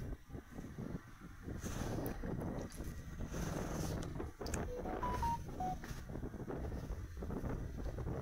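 Small Honda motorcycle riding slowly over a rutted dirt road, its engine running quietly under wind and road rumble. About five seconds in there is a brief run of short, high, whistle-like tones.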